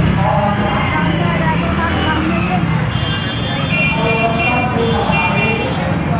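Crowd hubbub: many people talking at once, with motor vehicles among them. About halfway through, a high steady tone, like a horn or whistle, is held for roughly two seconds with a short break.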